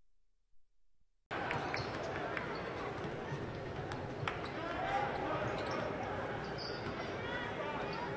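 Near silence for about a second, then arena game sound cuts in suddenly: a basketball bouncing on the hardwood court as clicks over a steady crowd hubbub with indistinct voices.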